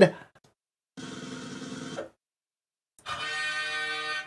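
Edited-in game-show sound effects for a prize wheel: about a second of rapid clicking as the wheel spins, a pause, then a bright held musical chord near the end announcing the result.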